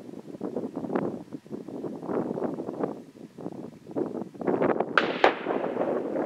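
Distant rifle shot from a Savage Model 12 in 6.5 Creedmoor, heard from over 400 yards away: the bullet hitting the doe is heard before the rifle's report, two sharp sounds about a quarter second apart about five seconds in. It is the sound of a solid hit, over a steady background rush.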